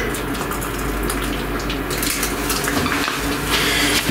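Water poured from a stainless kettle into a glass French press of dried herbs: a steady splashing pour that grows a little louder near the end.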